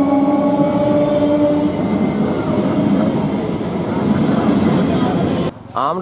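A train running on the rails with a steady, loud rumble. A few steady tones over it fade out about two seconds in. It cuts off suddenly near the end, where a voice takes over.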